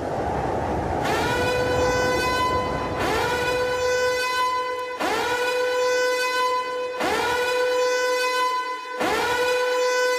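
A low rumble, then, from about a second in, a loud horn-like blast that sounds five times, two seconds apart. Each blast scoops up in pitch and then holds one steady tone, as part of the act's backing track.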